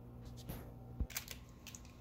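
Handling noise: a few sharp clicks and crackles, with one low thump about a second in, over a faint steady low hum.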